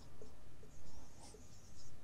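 Marker pen writing a string of digits on a white board: a series of faint, short pen strokes.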